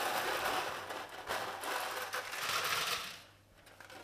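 Smarties, small sugar-coated chocolate sweets, being tipped from one plastic plate onto another: a rapid clattering rattle of the candies on the plastic that stops about three seconds in.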